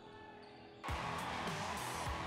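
Soft background music, then a little under a second in, game sound cuts in loudly over it: a basketball bouncing on a hardwood court amid steady arena noise.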